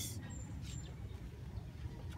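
Quiet outdoor ambience: a low steady rumble with two faint short high chirps, about a third of a second and three quarters of a second in.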